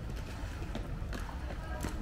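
Outdoor ambience with a low rumble, scattered light taps and clicks, and faint distant voices.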